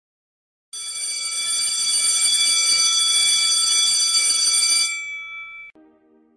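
A bell ringing steadily and continuously for about four seconds. It starts just under a second in and dies away near the end.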